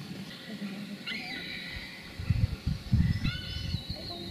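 A wild bird calls twice, high and with several overtones, about a second in and again near the end. Low, uneven rumbles on the microphone, like wind gusts, are the loudest sound in the second half.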